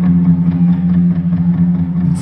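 Live rock band's guitars and bass through a concert PA, holding a loud, steady low chord.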